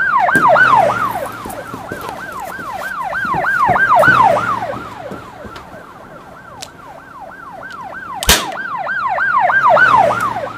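Electronic emergency-vehicle siren in a fast yelp, about three pitch sweeps a second, swelling louder and fading away three times. A single sharp click comes a little after eight seconds.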